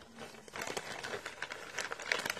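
Thick plastic bag crinkling as hands handle and open it: a quiet, irregular run of crackles.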